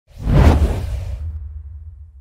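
Whoosh sound effect with a deep rumbling low end, swelling in sharply about half a second in and then fading away: an intro transition as a logo is revealed.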